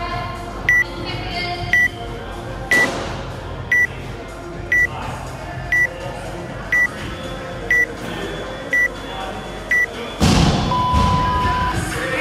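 Workout countdown timer beeping: ten short, high beeps once a second, then one longer, lower beep that signals the start of the workout. A sudden loud burst of noise comes just before the long beep.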